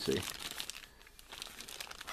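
Clear plastic bag around a plastic model kit's sprues crinkling as it is handled, a run of irregular crackles that grows quieter about a second in.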